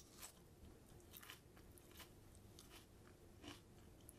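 Faint chewing of a bite of raw habanero chili: a handful of soft, irregular crunches from the mouth.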